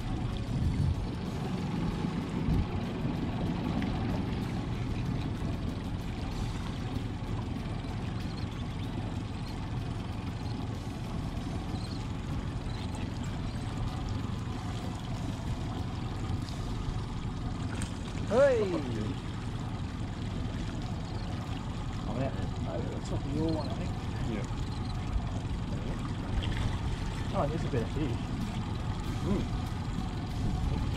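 Steady low rumble on a small boat on open water. A short falling vocal exclamation comes about 18 seconds in, and a few faint vocal sounds follow later.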